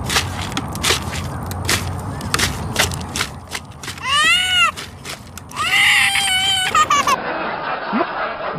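A toddler cries out twice in distress as a large bird pecks at him in a plastic wagon: a short rising-and-falling wail about four seconds in, then a longer, louder scream. Sharp clicking taps come before the cries.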